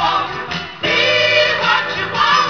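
Soul record playing from a 7-inch vinyl single on a turntable: a sung lead with backing voices over the band, briefly dipping in loudness and swelling back just under a second in.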